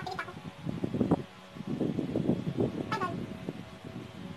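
Stifled giggling and laughter in quick irregular pulses, with one short high sound falling in pitch about three seconds in.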